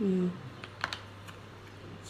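A brief vocal sound, then a few light clicks of a small hard-plastic gadget being handled.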